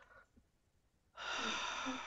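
A man's long breathy sigh, heard over a video call, starting a little past halfway and running about a second, after a near-silent pause.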